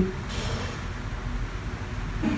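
Low steady background rumble, with a short soft hiss about half a second in.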